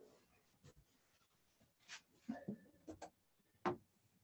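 Faint sounds of handwriting: a few short strokes and sharp taps as a lecturer writes out a chemical equation.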